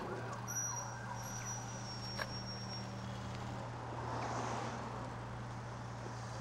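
Electric driveway gates opening, their motor giving a steady low hum that starts abruptly, with a single click about two seconds in.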